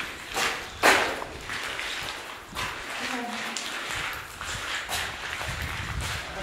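Footsteps on the wet rock floor inside a lava tube: irregular knocks and scuffs, the loudest about a second in, with the voices of other visitors in the background.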